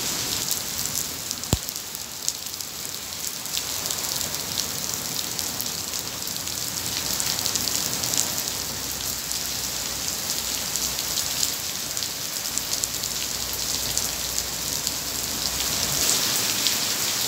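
Steady rain shower from a passing cumulonimbus: a dense hiss with the fine patter of drops hitting nearby surfaces. A single sharp click stands out about a second and a half in.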